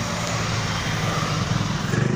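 Steady drone of an engine passing nearby: an even rushing noise over a low hum.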